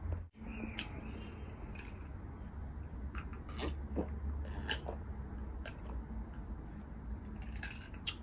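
Close-miked mouth sounds of eating bulalo beef: chewing with scattered short wet clicks and smacks, and swallowing while drinking from a glass about halfway through. A brief dropout just after the start, and a faint low hum underneath.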